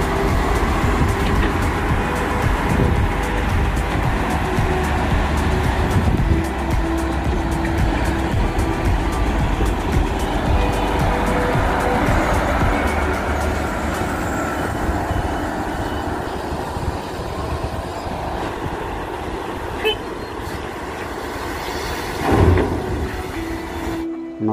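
Volvo wheel loader's diesel engine running steadily as the machine drives and carries a loaded bucket of gravel. A brief louder burst comes near the end.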